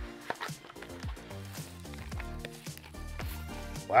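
Background music with held bass notes that shift pitch every so often.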